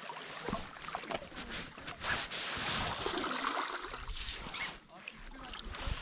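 Seawater splashing and trickling as a hooked squid is drawn out of the water onto the shore rocks, with a brief splash about two seconds in and a faint voice in the background.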